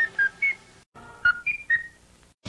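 A short whistled jingle from Morinaga commercials: a few brief high notes, a sudden break just before a second in, then three more notes.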